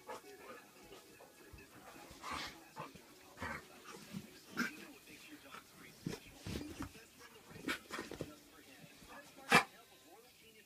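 A pit bull terrier scuffling and sniffing around a fabric pop-up play tunnel: scattered soft rustles and knocks, with one sharper knock near the end.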